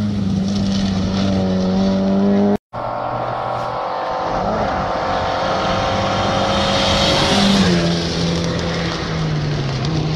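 Rally car engines on a gravel forest stage. One car runs hard on a steady engine note as it drives away. After a short break, another car comes on at full throttle, and its engine note falls about three-quarters of the way through as it lifts off.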